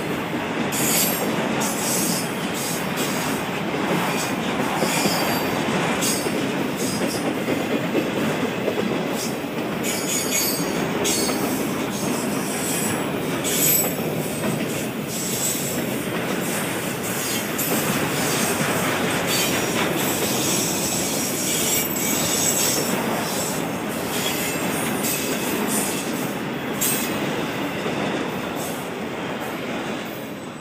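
Freight train of autorack cars rolling past close by: a steady rumble of steel wheels on rail with high-pitched squeals coming and going, dying away at the end as the last car passes.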